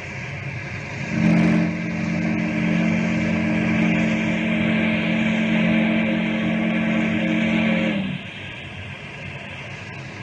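Steamboat whistle sound effect: one long chord-like blast of several steady pitches, starting about a second in and lasting about seven seconds, over a steady rushing noise of running steam machinery.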